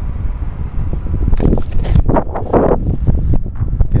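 Wind buffeting the microphone, a loud low rumble throughout, with a few short rustling bursts in the middle.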